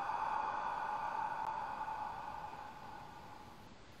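Ujjayi breath: a long, slow exhalation through a narrowed throat, a hushed whispered 'ah' that fades away gradually over about four seconds.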